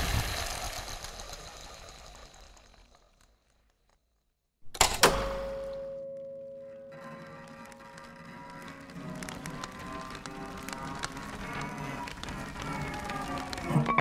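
Electroacoustic music made from processed recorded sounds. A noisy texture fades out to silence. A sudden attack follows with a held steady tone, then a layered texture of tones and clicks slowly builds.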